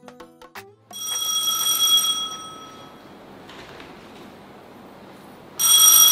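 A plucked music cue ends, then an electronic doorbell chime rings twice: a steady, high ring about a second in that fades, and a louder ring near the end.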